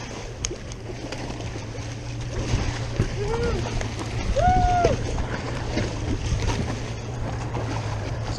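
Boat outboard motor idling with a steady low hum under wind and water sloshing against the hull. A little before the middle come two short drawn-out calls from a distant voice.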